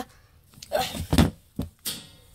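Three sharp knocks in quick succession, from about a second in, as plush toys are handled and struck against a hard surface, after a brief vocal sound.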